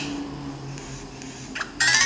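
Mobile Ludo game sound effects: soft low steady tones, then near the end a bright chime jingle that rises in pitch.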